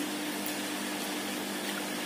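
Steady room noise: an even hiss with a low, steady hum underneath.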